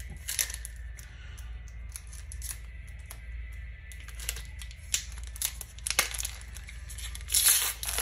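Foil wrapper of a Pokémon card booster pack being handled, crinkled and torn open, with scattered crackling rustles and a louder burst of tearing near the end.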